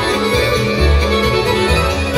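Live band playing kolo dance music: a melody over a steady, pulsing bass beat.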